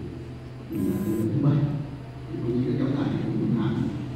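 Distant, indistinct speech, muffled and lacking clear words, over a steady low hum.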